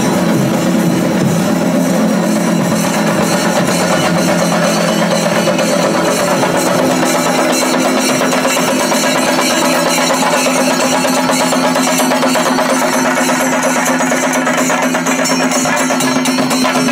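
Chenda drum ensemble beaten with sticks in a fast, dense, unbroken rhythm, with steady held tones underneath.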